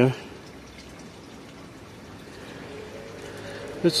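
Faint steady outdoor background noise with no distinct event, growing slightly louder toward the end, between a man's spoken phrases.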